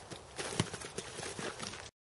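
Sword sparring with practice swords: a quick run of sharp knocks from the swords striking together, mixed with feet scuffing and stepping on a dirt track. The sound cuts off suddenly near the end.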